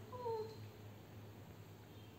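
Female cat in heat giving one short, low call that falls slightly in pitch.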